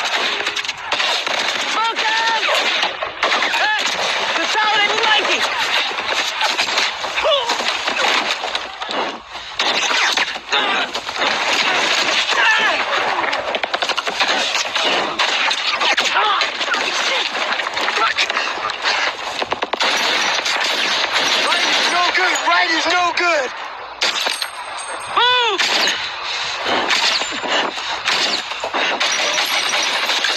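War-film battle soundtrack: rapid, near-continuous automatic gunfire in a forest firefight, with men's voices shouting through it. About 25 seconds in, a single loud sweep rises and falls in pitch.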